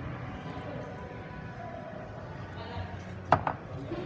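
Quiet room noise, then a sharp double click a little over three seconds in as a small glass essential-oil bottle is set down on the countertop.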